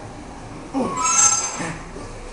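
A man's strained groan at the end of a set of dumbbell curls, falling in pitch, with a metallic clank and ringing as an iron-plate dumbbell is set down about a second in.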